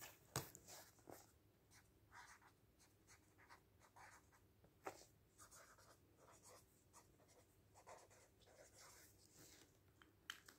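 Faint pen scratching on a magazine page in short strokes, with a few light ticks.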